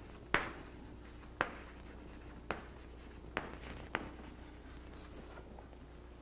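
Chalk writing on a blackboard: five sharp taps in the first four seconds, about a second apart, with faint scratching of the chalk between them, then only faint scratching.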